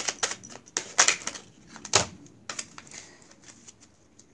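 A deck of tarot cards shuffled by hand: a run of quick, irregular clicks and snaps, loudest in the first two seconds and thinning out near the end.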